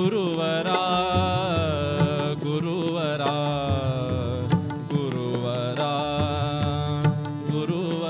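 Kannada devotional bhajan music: a held harmonium melody with tabla strokes and small taal hand cymbals clicking about twice a second, and a male voice gliding and wavering in places.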